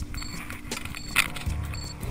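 BCA Tracker 2 avalanche beacon beeping in search mode: short high beeps, one about every 0.8 s, over scattered clicks and knocks.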